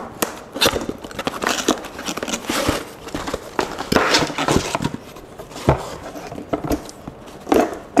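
A cardboard product box being opened by hand and its inner packing slid out: irregular scraping and rustling of cardboard, with a few sharp knocks and clicks.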